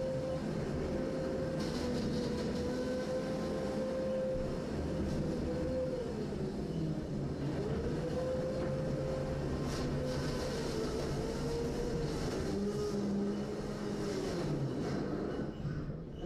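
Combat robots' electric motors whining: a steady whine that sags in pitch and climbs back up several times, over a lower hum.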